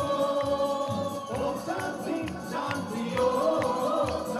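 A group of voices singing a song together over backing music with a steady percussive beat.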